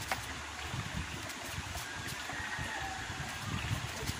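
Steady rush of a small stream running over rocks, with a few faint small clicks.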